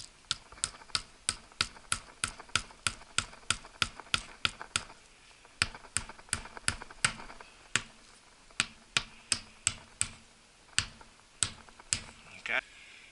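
Hammer striking a nail into a car tyre's tread, a rapid run of sharp taps about three a second, with a short break about five seconds in and slower, spaced blows near the end.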